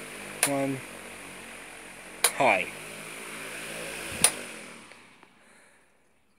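Electric pedestal fan running with a steady whir and hiss. Three sharp clicks come about two seconds apart, and after the last one the whir dies away to silence.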